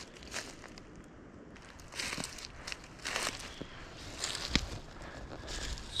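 Footsteps crunching and rustling through dry fallen leaves on a forest floor, an uneven step about every second, with one louder thump about four and a half seconds in.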